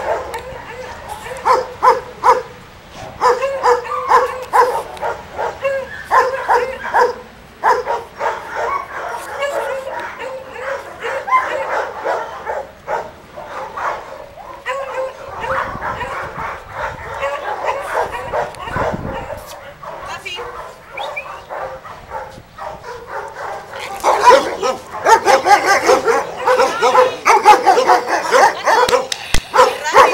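German shepherd dogs barking and yipping in short, repeated calls as they play together, louder and busier in the last few seconds.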